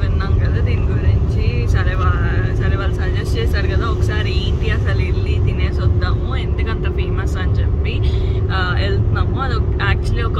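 Steady low road rumble inside the cabin of a moving car, with a steady hum, and a woman talking over it for much of the time.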